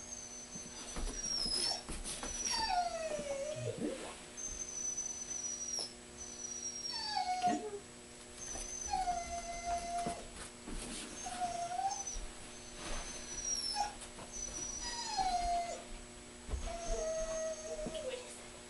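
A dog whining over and over: high, thin whines and cries that slide down in pitch, coming a second or two apart.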